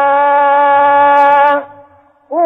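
A Quran reciter's voice holding one long, steady vowel at a constant pitch, the drawn-out ending of a chanted phrase, cutting off about one and a half seconds in.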